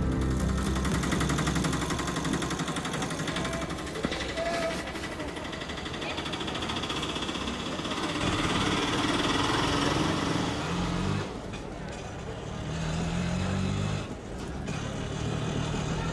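Busy street ambience: a steady wash of traffic noise with indistinct voices, some louder voice fragments in the last few seconds.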